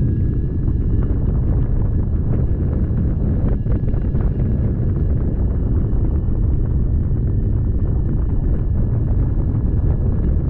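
Airflow rushing over the microphone of a camera on a hang glider in flight: steady, heavy, low wind noise. A faint, steady high whine runs underneath it.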